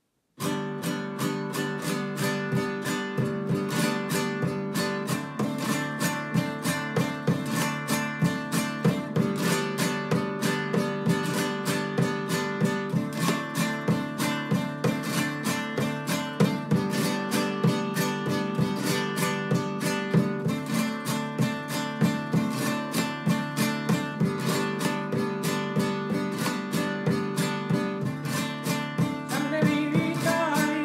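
Spanish acoustic guitar strummed in a steady, fast rhythm of repeated strokes over ringing open chords. It is in the traditional 'por la valenciana' open tuning, with the first string lowered from E to D so that the open strings sound a G chord.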